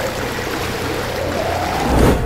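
Intro sound design of a teaser's soundtrack: a steady, loud rushing noise over a deep rumble, with a faint tone rising slightly near the end as it leads into the music.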